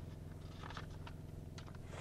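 Faint rustles and ticks of paper pages being handled and turned in a service booklet, over a low steady hum.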